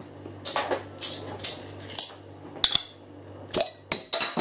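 A bottle opener clinking against the metal crown cap of a glass beer bottle as the cap is prised off: a string of sharp metallic clicks and clinks, about eight, unevenly spaced, the sharpest near the end.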